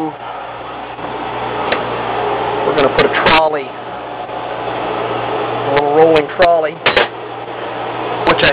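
A steady low machinery hum, with a man speaking briefly about three seconds in and again around six to seven seconds.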